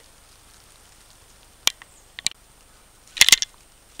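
Dry leaf litter crackling as a hand reaches into it. A faint steady hiss is broken by a few sharp clicks around the middle, then a short, louder burst of crackling near the end.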